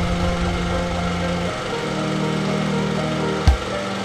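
Background music with a rushing, rattling transition sound effect laid over it, ending in a single low thump about three and a half seconds in.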